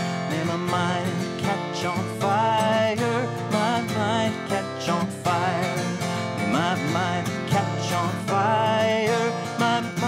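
Takamine acoustic guitar strummed in a steady song accompaniment, with a wordless sung melody with vibrato over it.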